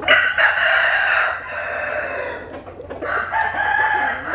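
Rooster crowing: one long, loud crow right at the start, then a second crow beginning about three seconds in.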